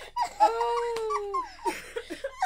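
A woman's high-pitched squeal of excitement, held for about a second and falling slightly at the end, followed by a few short vocal sounds.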